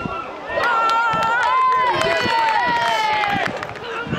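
Several voices shouting at length at the same time in a goalmouth scramble, the longest call falling slowly in pitch near the end. This is the reaction of players and spectators as the goalkeeper goes down to the ball.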